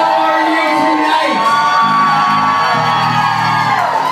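Live band playing sustained, held notes, with low steady notes coming in about halfway, while a crowd whoops and cheers.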